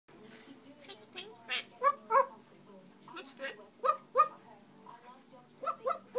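A series of short, dog-like barks. The loudest come in quick pairs, a 'woof-woof' about every two seconds, with softer barks in between.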